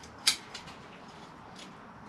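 Scissors snipping through the roots of a beech bonsai to cut away circling, dog-legging roots. One sharp snip comes about a quarter second in, then a few fainter clicks.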